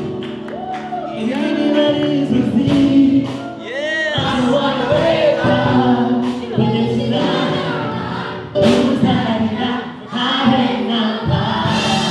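A man singing a song live into a handheld microphone, with a group of voices singing along.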